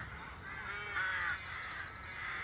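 Birds calling: a series of short repeated calls, joined about a second in by a rapid high trill from another bird that lasts just under a second.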